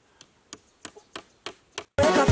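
Hammer driving a nail into a wooden pole: six sharp, evenly spaced taps, about three a second.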